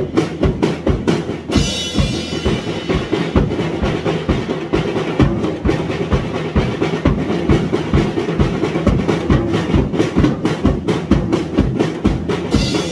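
Acoustic drum kit played freestyle: a steady run of bass drum beats under snare and tom hits, with cymbals crashing in about a second and a half in and ringing on.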